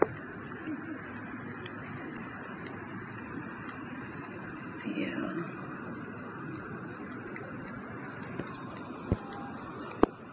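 Steady outdoor city background noise with a hum of traffic. There is a short louder sound about five seconds in and a sharp click near the end.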